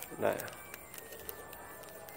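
Faint light clicks and ticks of a clear plastic earphone case being turned and handled in the hand, after one short spoken word at the start.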